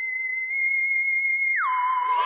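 A synthesized whistle-like electronic tone held steady at a high pitch, then sliding down about an octave and holding there near the end.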